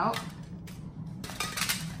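Thin disposable aluminium foil pans being pulled apart from a stack and set on a stone countertop: a few light metallic rattles and clicks, bunched about a second and a half in.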